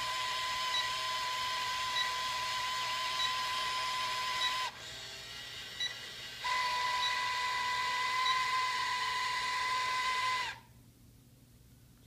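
Electronic sound effect from a 1999 Star Wars probe droid toy's small speaker: a steady high whine with faint regular pips over it. It cuts out about 4.7 s in, comes back about 6.5 s in and stops near 10.5 s.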